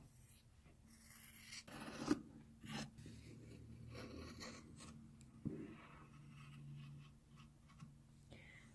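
Kai 7250 fabric shears cutting through several pinned layers of cotton fabric: faint, scattered snips and rubbing of the blades and cloth, with a few sharper snips about two seconds in and again midway.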